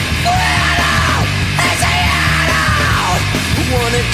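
Punk rock band recording playing loud and steady, with a yelled vocal line over the band.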